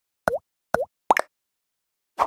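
Three quick pop sound effects about half a second apart, each a short plop with a quick dip and rise in pitch.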